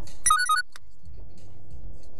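A short electronic chime of a few quick alternating tones, over the steady low rumble of a car driving, heard from inside the cabin.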